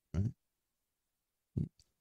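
A man's speech pausing: one short word, then near silence, broken by a brief vocal sound, a mouth noise or breath, near the end.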